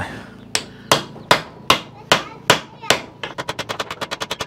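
A mallet tapping the end of a large screwdriver: seven sharp taps about 0.4 s apart, then a faster run of lighter taps near the end. This is the tap-and-turn method, shocking the threads of tight screws so they turn out without the heads stripping.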